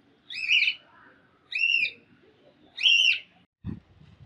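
Caged pet birds calling: three loud, arching calls about a second and a quarter apart. A short low thump follows near the end.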